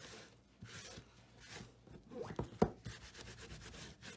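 Paper towel rubbed in repeated wiping strokes over a stained, paper-collaged MDF tag, taking off the excess stain. A few sharp knocks come about two and a half seconds in.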